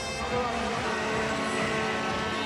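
Basketball arena crowd noise during a stoppage in play, a steady wash of sound with several sustained tones held through it.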